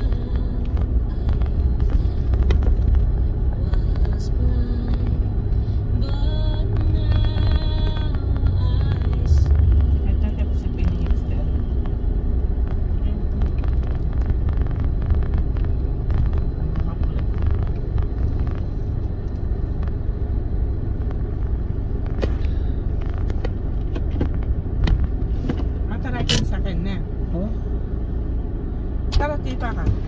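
Steady low rumble of a moving car heard from inside the cabin, with indistinct voices and snatches of music or singing over it.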